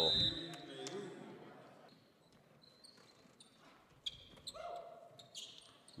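Faint basketball gym sounds: scattered short clicks of a ball bouncing and brief high squeaks of sneakers on a hardwood court, with distant voices in the hall.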